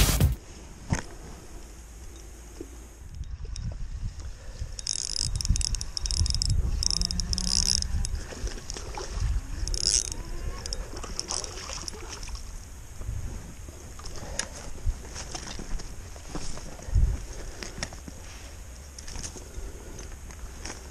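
Spinning reel being cranked while a largemouth bass is fought and landed, with irregular handling rustle and low rumble on the camera mic and clusters of scratchy high-pitched bursts partway through.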